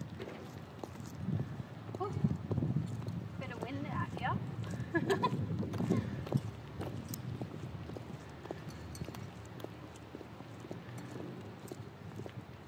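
Footsteps of 6-inch high heel mules on concrete: the heels click with each step. A voice is heard briefly in the middle.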